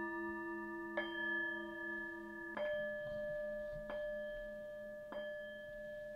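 Frosted crystal singing bowls and a hand-held metal singing bowl struck with a mallet, about four strikes at roughly one-and-a-half-second intervals. Each strike leaves pure tones that ring on and overlap, over a low, slowly pulsing hum.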